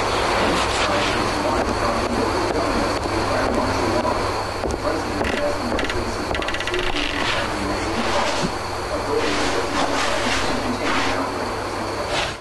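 Water running steadily from a tap or shower as a child's hair is washed, with a television announcer's voice barely heard beneath it.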